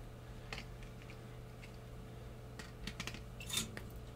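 Faint, scattered small clicks and rustles of copper desoldering wick being pulled off its spool and handled, over a steady low hum.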